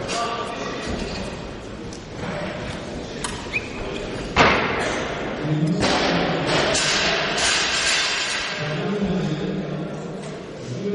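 Bumper plates and collars being loaded onto an Olympic barbell in a large hall: a couple of light metallic clicks, then one heavy thump about four seconds in.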